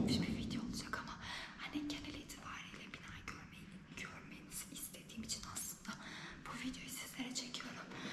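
A young woman speaking quietly in Turkish, too softly for the words to come through clearly.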